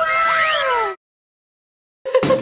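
Outro sound effect: a loud cry-like tone falling in pitch, crossed by a rising whistle-like glide, over a noisy wash. It cuts off abruptly about a second in, and dead digital silence follows.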